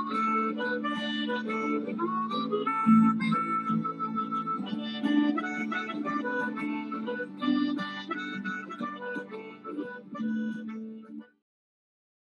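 Blues music with a harmonica playing the lead line over sustained low accompaniment, cutting off abruptly near the end.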